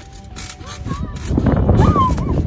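Wind buffeting the microphone, building to a loud rumble in the second half, with a few short high voice squeals.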